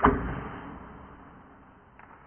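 A bow being shot: one sudden sharp thwack as the arrow is loosed, fading away over about a second and a half.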